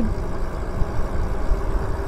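Rushing, rumbling noise of riding an e-bike on pavement: wind buffeting the handlebar-mounted camera's microphone, with tyre noise under it and a faint steady hum.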